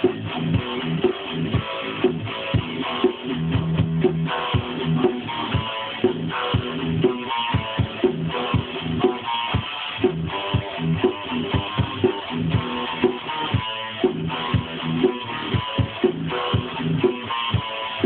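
Guitar played as music, with chords and single notes over a steady beat of regular percussive hits, about two a second.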